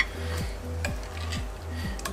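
Background music with a steady beat, over a faint sizzle from a hot pan of Mongolian beef and the clink of a metal ladle scooping it onto a plate: a click at the start and another just under a second in.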